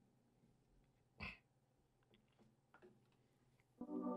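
Near silence: room tone with one brief faint noise a little over a second in and a few faint clicks. Music from the played video comes in just before the end.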